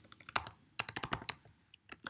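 Computer keyboard being typed on: two short runs of key clicks with a brief pause between them, and a single keystroke near the end.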